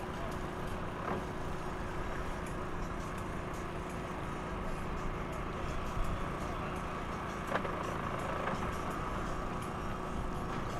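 Steady engine hum with faint voices in the background and a couple of brief knocks, about a second in and past the halfway mark.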